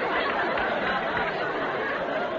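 Studio audience laughing, a dense wash of many voices.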